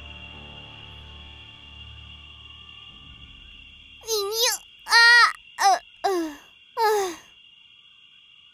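Soft sustained background music fades out. About four seconds in, a girl's voice makes a handful of short, strained, wordless vocal sounds with gliding pitch. A steady high chirring of night insects runs underneath.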